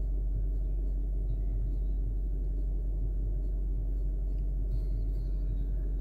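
Steady low rumble inside an Audi's cabin, with no change through the whole stretch.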